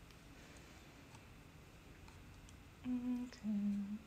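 A woman hums two short steady notes near the end, the second lower than the first. Before them there is only faint room tone with a few light ticks.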